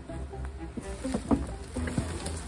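Background music with held notes, and several sharp clattering knocks of dry sticks and branches being pushed into a plastic wheelie bin, the first about a second in.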